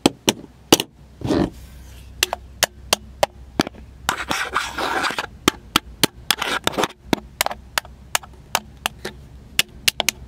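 Handling noise on a Canon SL2 (200D) camera body, picked up by its built-in microphones. It is an irregular run of sharp clicks and taps, about two or three a second, with brief stretches of rubbing or scraping in between, the longest about four seconds in.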